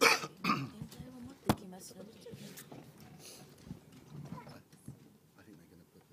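Two short coughs right at the start, a sharp click about a second and a half in, then low murmured voices.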